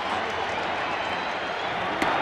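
Baseball stadium crowd noise: a steady din of many voices from the stands.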